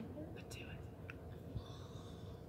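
Faint, indistinct quiet voice: a student murmuring an answer to the instructor's question, over low room hum.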